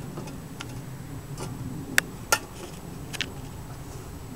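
A few scattered sharp clicks and knocks from handling an opened beehive and bee smoker, the loudest about halfway through.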